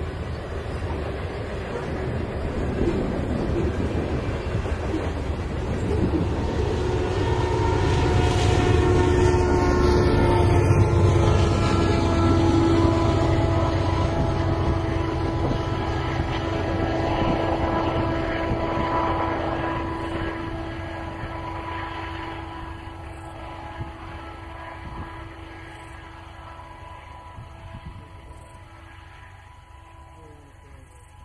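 Freight train of loaded grain hopper cars rolling past on the main line, a low rumble with wheel clatter that swells to its loudest around ten seconds in and then fades steadily as the train moves away. A steady humming tone runs through the middle of it.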